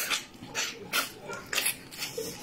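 Wet slurping and lip-smacking as a person sucks soup-soaked pounded yam off her fingers, in a quick run of short smacks.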